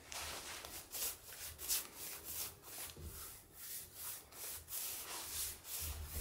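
Paintbrush spreading clear satin finish along a rough, hand-hewn wooden beam: a steady run of brush strokes, about two a second.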